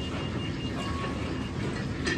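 Steady low rumbling roar of a commercial Chinese kitchen's background machinery.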